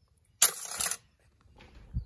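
A metal scrap piece dropped back into a five-gallon bucket of shred iron, giving one brief sharp metallic clatter about half a second in.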